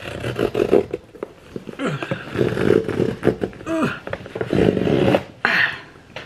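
Cardboard box being torn open along its pull-tab tear strip: several loud ripping, scraping pulls with short pauses between them.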